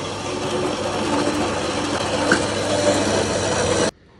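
Horizontal metal-cutting band saw running with its blade cutting a notch into steel rebar: a steady running and cutting noise that stops abruptly near the end.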